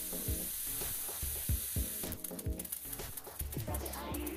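Water drops sizzling and crackling on an electric hot plate heated above 200 °C, the sharp spitting ticks growing denser about halfway through. Background music plays underneath.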